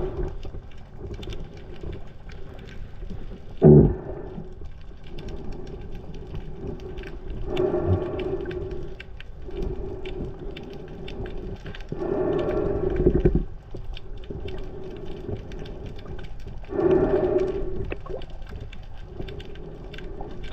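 Underwater sound: a steady low hum with several louder swells every four to five seconds, and one sharp thump about four seconds in.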